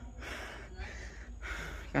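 A person breathing hard, out of breath after carrying a heavy solid-wood bed: about three long, noisy breaths.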